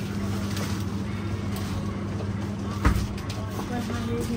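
Steady low hum of glass-door drinks fridges, with one sharp knock about three seconds in.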